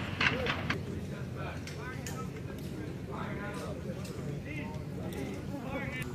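Faint voices calling out across an open field over steady outdoor background noise, with a few sharp clicks in the first second.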